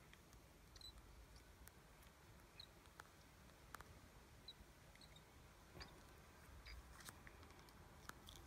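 Faint, very short high peeps from a juvenile dark-eyed junco, scattered through near silence, with a few soft clicks.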